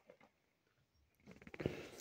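Near silence with a few faint clicks, then about a second and a half in a short stretch of mouth noise crackling with fine clicks, building just before speech.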